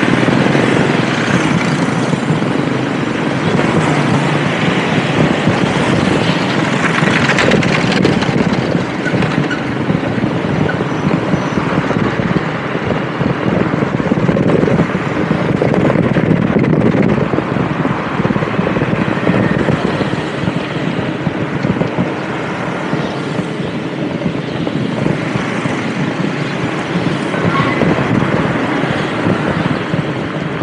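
Steady riding noise from a motorbike moving through town traffic: its engine running with the rush of moving air. Other motorbikes pass close by near the start.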